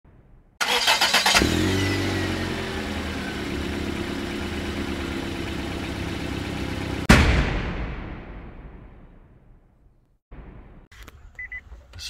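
Intro sound effect: an engine cranks briefly with rapid clicking, starts and runs steadily for several seconds, then a loud hit about seven seconds in rings away over the next three seconds. Faint short electronic beeps follow near the end.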